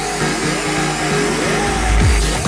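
Electronic trance music in a build-up without the kick drum: synth notes slide upward again and again over a rising hiss, and a deep bass swells in near the end.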